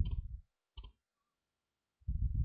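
Low, rough rumbling sound effect as the impression tray is pulled off the model. It fades out about half a second in, followed by a short click just before the one-second mark.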